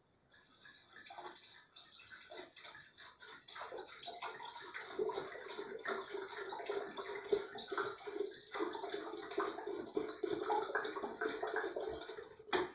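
About a litre of water poured from a glass bottle into an open electric kettle: a continuous pour that grows steadily louder as the kettle fills.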